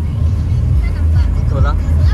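Car driving at speed, heard from inside the cabin: a steady low rumble of road and engine noise.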